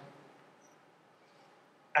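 A spoken word dies away in the first moment, then near silence: room tone. Speech starts again at the very end.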